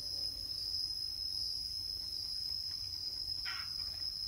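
Insects droning in the forest: one steady, unbroken high-pitched buzz.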